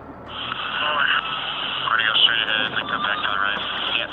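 A radio transmission: a man's voice, garbled and unintelligible, coming through a narrow, tinny channel with a steady hiss over it.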